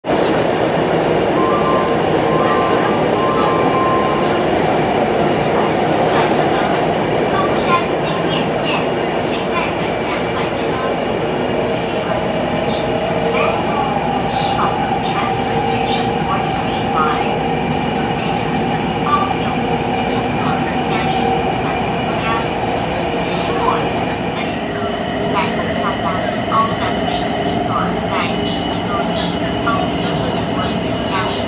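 Taipei MRT Bannan line train running between stations, heard from inside the car: a steady rumble of the moving train with a faint steady whine over it.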